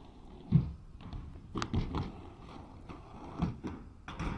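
Inline skate wheels rolling on pavement, with a low rumble and scattered knocks and thumps; the loudest is a sharp knock about half a second in.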